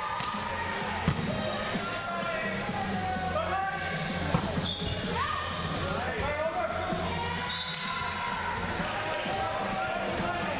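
Volleyball rally on an indoor court: the ball is struck sharply twice, about a second in and again about four seconds in, over players' voices calling in the hall.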